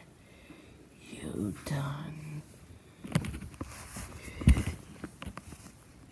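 A short low voice sound, likely a whispered or hummed line or sound effect, about a second and a half in. It is followed by a run of clicks and knocks from toys being handled on carpet, with one heavy thump about halfway through.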